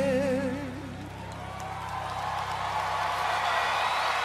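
A man holds a final sung note with vibrato over a sustained piano chord, the voice ending about a second in. Then the piano rings on as audience applause and cheering swell.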